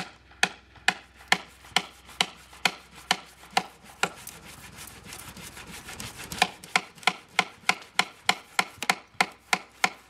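A tool striking wood in a steady rhythm of sharp knocks, about two a second. Near the middle the knocks give way for about two seconds to quicker, lighter scraping and tapping, then resume.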